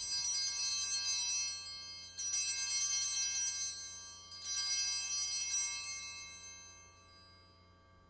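Altar bells rung three times, each ring a bright cluster of high tones dying away, the last fading out about seven seconds in. They mark the elevation of the chalice at the consecration.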